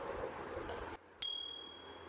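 A single click, then a bright bell ding that rings out and fades within a second: the notification-bell sound effect of a subscribe-button animation.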